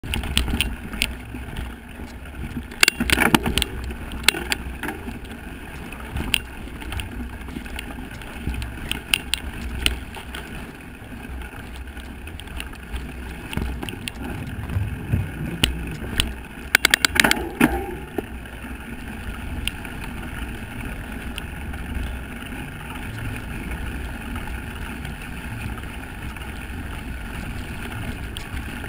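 Mountain bike riding over dirt and grass, heard through a bike-mounted camera: a steady low rumble of wind and ground noise, with bursts of rattling clicks about three seconds in and again around seventeen seconds.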